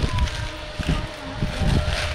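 Enduro dirt bike's engine revving in short, uneven bursts while the bike is bogged on a steep dirt climb, with wind buffeting the microphone.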